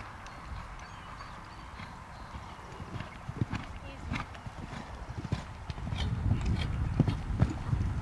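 A horse's hoofbeats cantering on sand arena footing: dull thuds that begin about three seconds in and grow louder as the horse comes closer.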